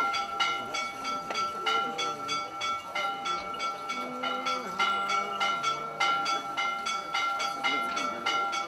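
Church bells rung rapidly in a rhythmic pattern, about four strokes a second on several bells of different pitch, over a steady ringing tone.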